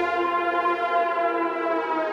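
Background music: a sustained electronic chord held steady.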